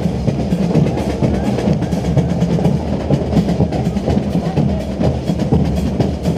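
School fanfarra (drum and brass marching band) playing as it marches: snare and bass drums beat a steady, busy rhythm under sustained brass.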